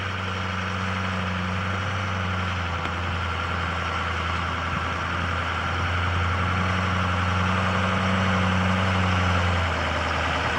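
Full-size pickup truck's engine running steadily as it tows a travel trailer slowly along a dirt trail, getting louder from about six seconds in and easing off just before the end.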